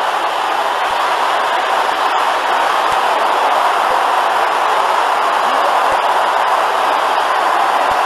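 A large congregation praying aloud all at once, many voices shouting their prayers together and blending into one steady wash of sound with no single voice standing out.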